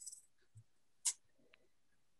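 Faint, brief desk noises from drawing: a short scratch at the start, a small knock, and one sharp click about a second in.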